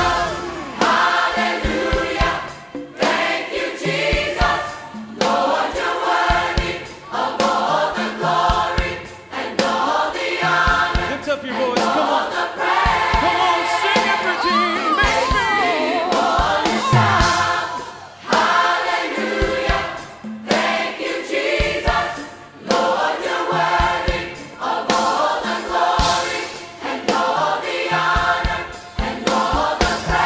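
A choir singing a gospel-style praise and worship song over instrumental backing, with a steady beat.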